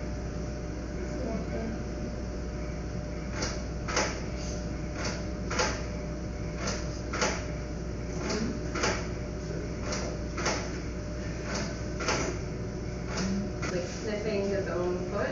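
Sharp clicks in pairs, about half a second apart, repeating roughly every second and a half over a steady low hum.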